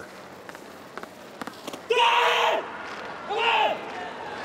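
A hammer thrower's loud yell as he releases the hammer, about two seconds in, followed by a shorter second shout, over a faint stadium background.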